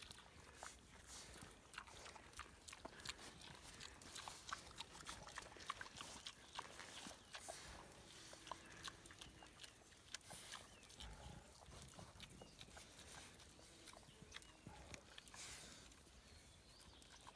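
Pigs rooting and chewing at the ground, heard faintly as many small, irregular clicks and crunches.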